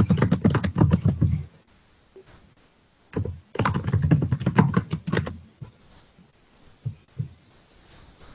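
Fast typing on a computer keyboard close to an open microphone. One burst ends about a second and a half in, a second runs from about three seconds in to about five and a half, and then come a couple of single taps near the end.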